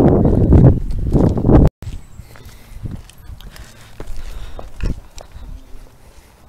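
Wind buffeting the camera microphone with a loud, low rumble that stops abruptly about two seconds in. It is followed by quiet footsteps and scattered knocks on gritty concrete.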